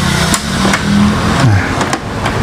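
Plastic clicks and knocks from an Epson L3210 printer's top housing being lifted by hand, three sharp clicks over a steady low hum.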